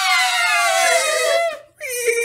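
A man making a vocal sound effect: a high, wavering wail that slides down in pitch and fades about a second and a half in, then a lower held note begins near the end.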